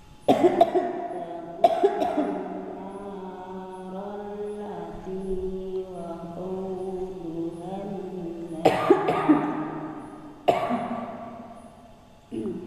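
Several coughs: two close together at the start, one more about a second and a half in, a cluster of three about nine seconds in and a last one near ten and a half seconds. Between them a voice chants in long, drawn-out notes at a nearly steady pitch, like the held vowels of Quran recitation.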